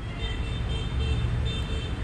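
Steady low rumble of outdoor background noise, the kind of distant road traffic heard in a city, with faint thin high tones over it.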